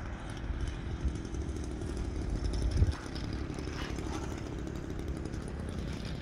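Small engine of a radio-controlled 'stick' model airplane running steadily with a buzz.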